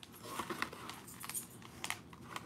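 Faint crinkling and tearing of a trading-card blister pack's cardboard backing as the cards are worked out by hand, in small irregular clicks and rustles.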